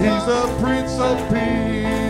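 A live gospel worship band playing, with keyboard and guitar and voices held between sung lines.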